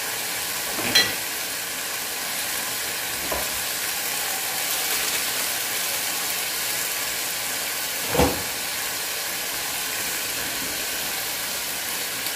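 Cabbage, carrots and green beans sizzling steadily in a pan with a little water, steam hissing off them. Two short knocks break in, about a second in and again about eight seconds in.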